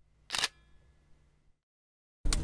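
A single camera shutter click about a third of a second in, with a faint ringing after it, against near silence.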